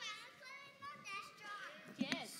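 Young children's high-pitched voices, several short calls and chatter.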